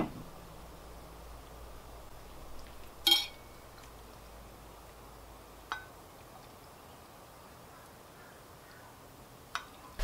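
Glassware clinking as cocktail sauce is ladled into stemmed wine glasses: one sharp, ringing clink about three seconds in, a fainter one a little before six seconds, and a couple of soft knocks.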